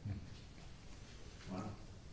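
Quiet room tone in a meeting room, then a short, soft exclamation of "Wow!" from a listener near the end.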